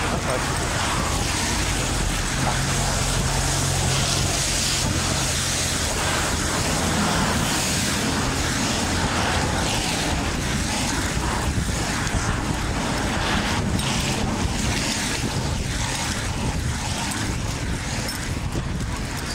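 Steady road traffic noise, with a vehicle engine humming more strongly for a few seconds from about two seconds in.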